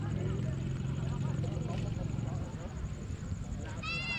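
Steady low engine hum and wind noise from a moving motorbike, with faint voices in the background. Near the end a long held tone begins.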